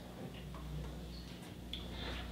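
A few faint, irregular clicks from a laptop being worked while a file folder is opened, over a low steady hum.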